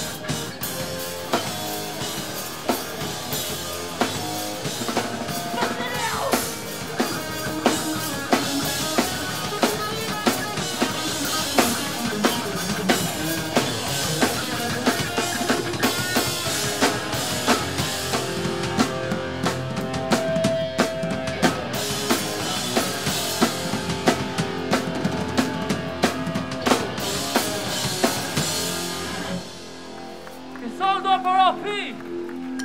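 Hardcore punk band playing live without vocals: distorted guitars over a drum kit keeping a steady beat. The music stops abruptly near the end.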